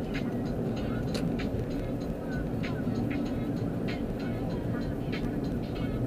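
Steady road and engine noise heard inside a moving car's cabin, with short faint high ticks scattered irregularly on top.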